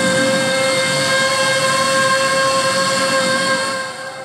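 Mimicry artists imitating a train with their voices through microphones: one long, steady horn-like whistle held over a rumbling noise, stopping near the end.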